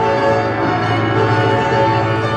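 Upright piano playing a passage of held chords whose notes ring on, changing chord a few times.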